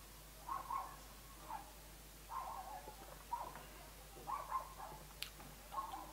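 Faint short animal calls, about one a second, each a brief level-pitched note, with a single sharp click about five seconds in.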